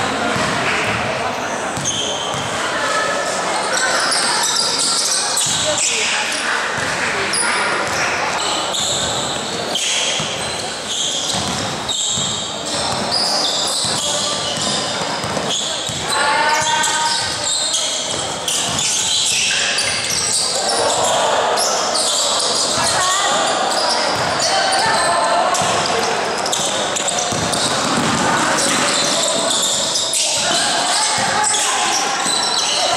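A basketball bouncing on a gym floor amid players' shoes squeaking and shouted calls, all echoing in a large indoor hall.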